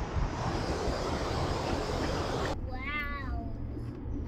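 Steady rushing of river water at a small waterfall, cutting off suddenly about two and a half seconds in to the low road hum inside a moving car, over which a drawn-out "wow" is heard.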